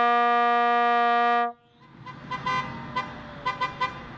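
Trombone holding one long note that stops about one and a half seconds in. A car then passes on the road, rising and fading, with several short horn toots.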